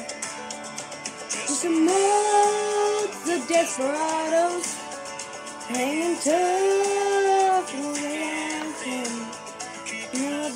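A song playing, with a female voice singing long held notes over the backing music.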